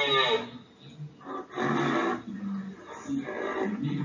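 Recorded rhinoceros vocalisations: a high, arching squeal that ends just after the start, then several short, rough calls with short gaps between them.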